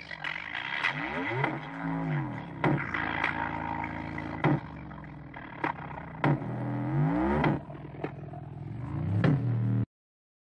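Bass-boosted electronic music playing loud through a pair of small Indiana Line TH 210 speaker boxes mounted on a car dashboard. Deep bass notes sweep up and down under sharp beats, and the sound cuts off suddenly just before the end.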